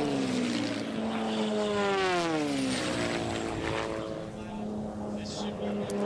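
Lancair sport-class race planes' piston engines and propellers passing low and fast. The engine drone drops in pitch twice in the first three seconds as planes go by, then carries on as a steadier drone.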